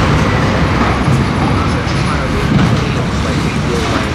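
Steady, loud din of street traffic mixed with the chatter of many people at outdoor café tables, the voices blurring into the noise.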